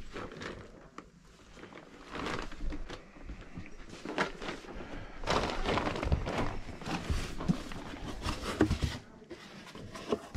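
Handling noise: rustling of a plastic shopping bag and irregular knocks and thunks as a cardboard box is handled, busiest in the second half.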